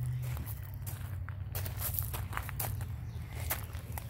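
Pea gravel crunching and shifting in irregular small clicks, over a steady low rumble.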